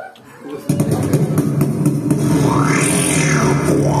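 Didgeridoo starting suddenly about three-quarters of a second in and holding a steady, loud low drone. A high sweep rises and falls over it in the middle.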